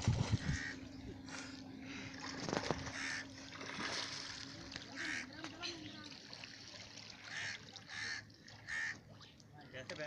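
Voices of people shouting and calling out over a river in short repeated calls, with water splashing. A steady low hum runs under the first few seconds, then stops.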